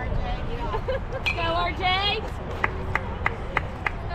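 A few calling-out voices, then five or six even hand claps, about three a second, near the end.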